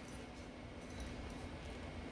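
Quiet room tone: a faint, steady low hum and hiss with no distinct events.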